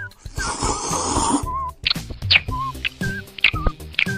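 A hissy, rushing sound effect lasting about a second, followed by light cartoon background music: a short wavering melody over a steady beat.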